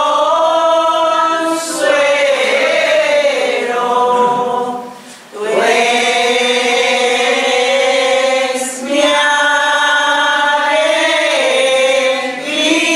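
A congregation of mostly women singing an alabanza, a devotional hymn of praise to the Virgin, in long held notes, with a short break for breath about five seconds in.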